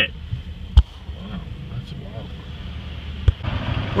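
Low, steady rumble of a car heard from inside the cabin, with two sharp knocks, one about a second in and one near the end.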